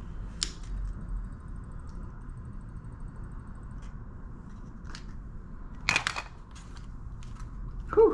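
Handling noise from a Canon mirrorless camera fitted with a large RF 24-70mm zoom lens: scattered small clicks and rubbing as it is turned over in the hands, with a sharp click about half a second in and a louder clatter about six seconds in. A faint high whine runs for a few seconds early on, over a low steady room hum.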